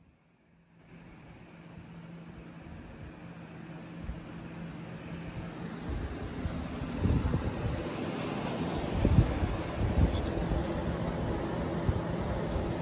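Electric floor fan running: a steady whir with a low hum, starting about a second in and growing gradually louder. Several low knocks come in the second half.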